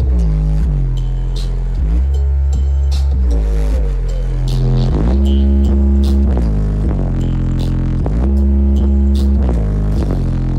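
Bass-heavy electronic music played loud through a car audio system with four DS18 EXL 15-inch subwoofers in a Q-Bomb box, heard inside the cab. Deep sustained bass notes change every couple of seconds under a light ticking beat.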